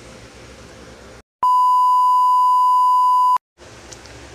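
A single steady, high-pitched electronic beep like a test tone, lasting about two seconds and starting and stopping abruptly, with a moment of dead silence just before and after it. It is an editing beep laid over the cut between segments, and faint room tone comes before and after it.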